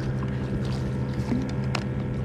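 A boat motor hums steadily, with a few light clicks near the end.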